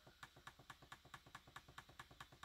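Near silence, with faint, even ticking about eight times a second.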